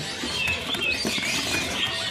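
Cinereous tits fluttering about inside a cage, wings flapping, with short high chirps repeating throughout.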